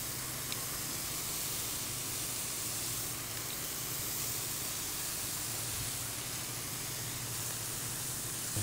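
Burger patties and fried eggs sizzling steadily in bacon grease on a hot round griddle.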